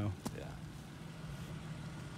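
Jeep Liberty engine running steadily, a low even hum.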